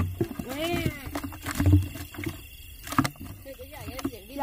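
Blue plastic tub and bucket knocked and handled on a muddy bank, with water sloshing inside and several dull thumps, the loudest near the middle. A short rising-and-falling voice-like call comes about half a second in.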